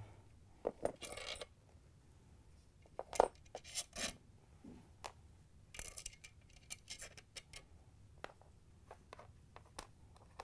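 Small steel ice-crusher blades and washers clinking as they are slid off an ice dispenser auger shaft and set down: scattered light metallic clicks, the sharpest about three seconds in.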